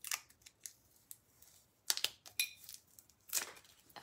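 Transfer tape being peeled off a vinyl heart decal stuck on a glass jar: a handful of short, sharp crackling rips with quiet gaps between them.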